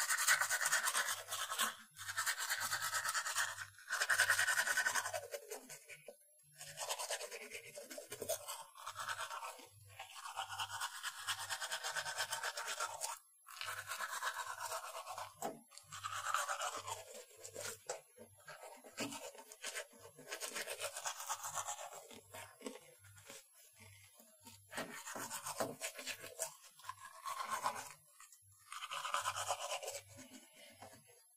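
Teeth being brushed with a toothbrush: the bristles scrub back and forth in bursts lasting a second or a few seconds, with short pauses between them.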